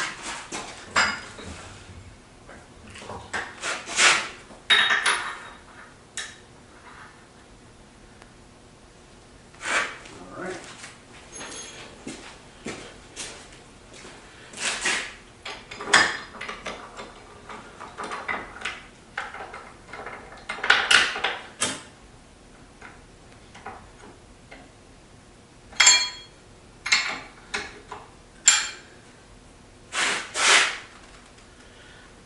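Irregular metal clanks and clinks as steel bar stock and the vise of an old power hacksaw are handled and set up, with the saw not running. Near the end a few strikes ring with a metallic tone.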